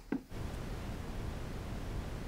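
Red noise: a steady, even hiss weighted heavily toward the lowest frequencies, a deep rumble, starting about a third of a second in and holding at a constant level.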